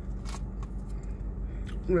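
Car air-conditioning blower running with a steady low hum, with a few faint clicks over it.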